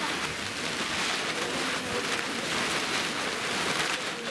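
A small crowd clapping, a steady patter of many hands, with a few voices underneath.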